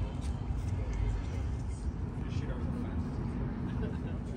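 Outdoor street ambience: a steady low rumble with indistinct voices of people walking past.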